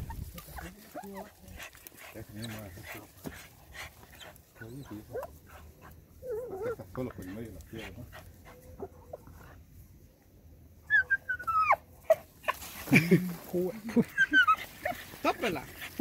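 A dog digging into an armadillo burrow, its paws scratching at the dirt in quick repeated strokes, and whining and yelping as it works at the hole. The yelps and whines come loudest in the last few seconds.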